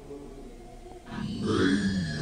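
Electronic loop-app track: after a quieter stretch of faint held tones, a loud, low, voice-like sample with a wavering pitch comes in about a second in.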